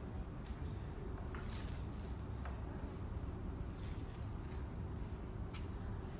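Athletic tape being pulled from its roll and pressed onto a bare foot: a few short, faint scratchy rasps and small clicks over a steady low hum.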